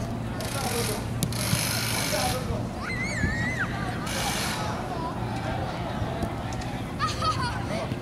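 Distant voices calling and shouting across an open sports field, with a high call about three seconds in and more calls near the end, over a steady low hum.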